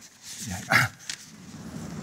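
A brief wordless vocal sound from the lecturer about half a second in, followed by a few faint taps of chalk on a blackboard.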